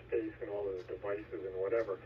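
A man's voice talking through a radio receiver's speaker, thin and narrow-sounding with no treble, over a steady low hum.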